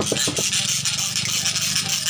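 A jeweller's torch rig starts up abruptly: a small motor runs with a steady pulsing low hum under a loud, steady hiss from the torch as it is readied for lighting.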